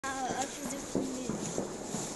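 Indistinct voices of people talking, with a high-pitched call near the start, over a steady high hiss.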